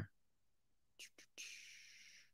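Near silence in a small room, broken by two faint clicks about a second in, then a soft breathy hiss lasting under a second.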